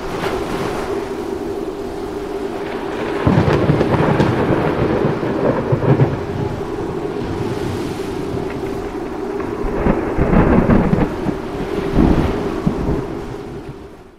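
Thunderstorm: steady heavy rain with two long rolls of thunder, one about three seconds in and another about ten seconds in, fading out near the end.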